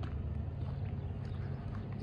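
Diesel tractor and loader engines idling steadily while warming up on a frosty morning, with footsteps on paving stones.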